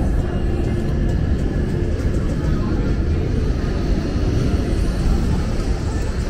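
Steady low rumble of outdoor city background noise, with indistinct voices mixed in.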